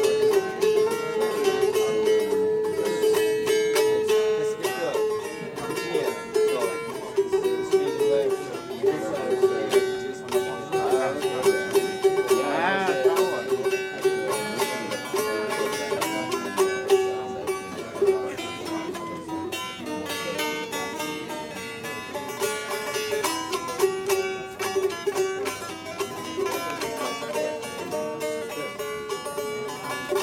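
Turkmen dutar, a two-stringed long-necked lute, strummed rapidly in a steady rhythm over a held drone pitch.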